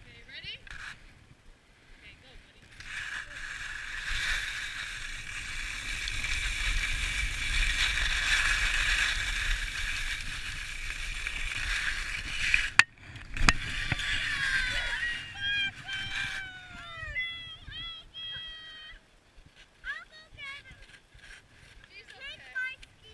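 Skis sliding and scraping over packed snow with rushing air for about ten seconds, ending in a sharp knock. Then a few seconds of short, pitch-gliding voice sounds.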